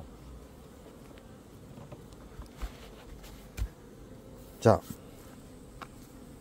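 Honeybees buzzing steadily around the hives, with a few soft low thumps partway through.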